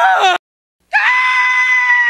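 Homer Simpson's cartoon voice letting out a long, high-pitched scream that starts about a second in and holds one steady pitch.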